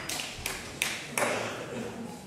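Applause dying away: a few last scattered hand claps, spaced further and further apart, then fading out.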